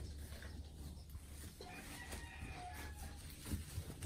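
A faint farm-animal call with a steady pitch, about two seconds in, over a steady low hum.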